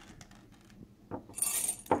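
Handful of small folded entry tickets dropped into a ceramic bowl: a couple of light clicks about a second in, then a brief bright rattle as they land.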